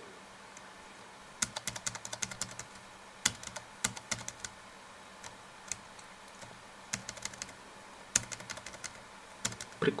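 Computer keys clicking in short quick runs, about seven bursts of a few strokes each.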